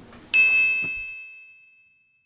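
A single bright chime struck once about a third of a second in, ringing out and fading over about a second and a half, with a faint second tap just after the strike.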